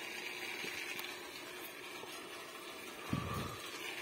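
Faint steady background noise, with a brief low rumble from the phone's microphone being handled about three seconds in, as the camera is moved away from the plant.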